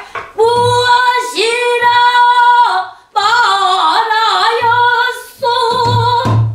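A woman singing pansori, holding two long notes split by a short breath about three seconds in, the second one wavering. Low strokes of a buk barrel drum sound underneath at intervals.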